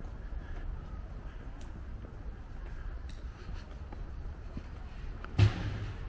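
Outdoor city-street background: a low steady rumble with a few faint clicks, and a short louder thump about five and a half seconds in.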